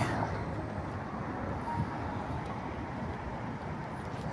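Steady, even hum of road traffic.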